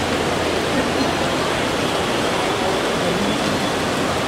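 Steady rushing background noise of a busy airport terminal, even throughout with no distinct voices or knocks standing out.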